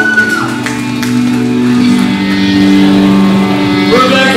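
Live heavy band playing: electric guitars hold sustained chords through a venue PA. A higher held note falls away about half a second in, and another pitched line comes in near the end.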